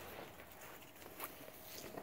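Faint footsteps on wood-chip mulch and grass: a few soft, scattered crunches.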